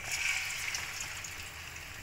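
Urad dal vada batter sizzling as it is dropped into hot oil in a frying pan. The sizzle starts suddenly, is loudest in the first moment, then settles into steady frying.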